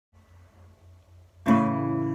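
Acoustic guitar: a single chord strummed about a second and a half in, then left ringing. Before it there is only a faint low hum.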